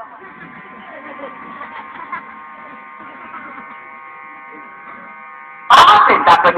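A steady electrical-sounding buzz with several held tones, over faint indistinct murmuring. It is cut off by loud speech near the end.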